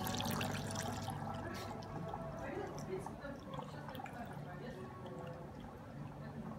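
Bourbon poured from a bottle through a plastic funnel into a small oak barrel, louder in the first second and then quieter.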